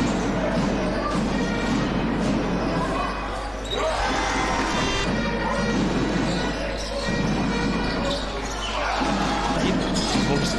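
Live arena sound of a basketball game: a ball bouncing on the hardwood court over a steady background of crowd noise in a large hall.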